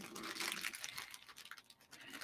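Crinkling of thin plastic packaging being handled, a dense run of fine crackles that thins out near the end.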